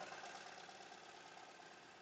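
Near silence with only a faint steady machine hum, the multi-needle embroidery machine running quietly in the background.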